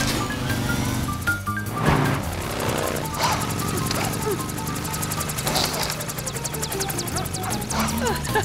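Background music with a quick, stepping melody over the steady sound of racing cartoon motorbikes.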